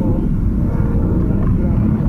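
Steady low rumble of a car's engine and road noise heard inside the cabin while driving.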